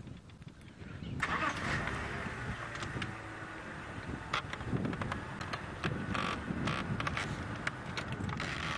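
A safari vehicle's engine starts about a second in and keeps running as the vehicle creeps forward, with a few knocks and rattles.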